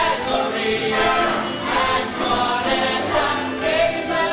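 A chorus of voices singing a musical-theatre number with accompaniment.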